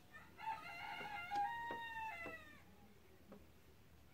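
A rooster crowing once, a long call of about two seconds that rises slightly and then falls away at the end. A few light clicks are heard around it.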